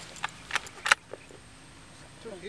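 A few sharp metallic clicks from a scoped rifle being handled on the firing mat, the loudest about a second in.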